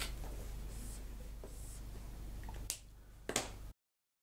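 Faint room tone with a steady low hum, then two small sharp clicks near the end before the sound cuts out abruptly.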